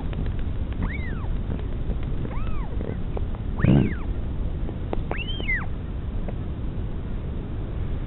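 Northern royal albatross chick begging while being fed: four short whistled calls, each rising and then falling in pitch, spaced a second or so apart, the third the loudest. A steady low rumble runs underneath.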